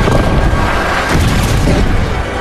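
A film's action sound mix: an explosion boom with a deep, continuous low rumble, under dramatic score music.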